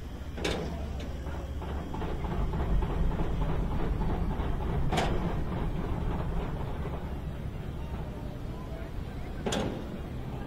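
Wind rushing over the microphone of a rider on a tall swinging-seat tower ride as the seats circle high up. There is a steady low rumble, and three short sharp sounds come about half a second in, halfway through and near the end.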